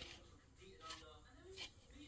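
Near silence: faint room tone with two soft clicks, one about a second in and one near the end.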